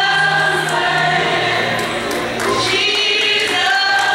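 Gospel choir music playing, with voices holding long sustained notes.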